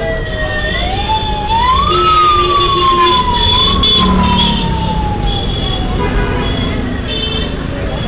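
A siren wailing with its pitch gliding: it jumps up quickly, then sinks slowly, several times, and fades out past the middle. It plays over a steady low street rumble.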